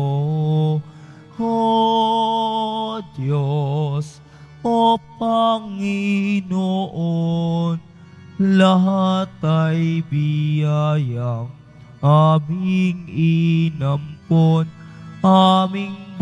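Offertory hymn sung in Filipino: a single melodic line of slow, held notes with vibrato, broken by short pauses for breath.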